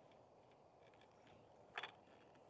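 Near silence, with one faint short click near the end.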